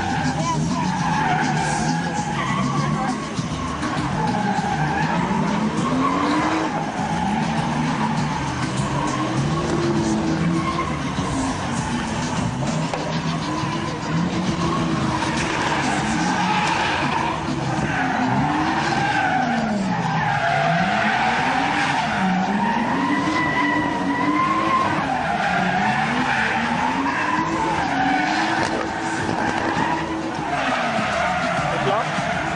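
A Toyota Supra drifting: its engine revs rise and fall every second or two under constant throttle work, over a continuous screech of sliding tyres.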